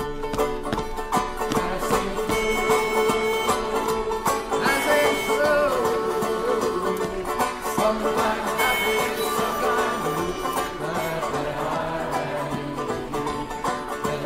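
Acoustic folk music with a banjo and other plucked strings playing an instrumental passage between sung verses.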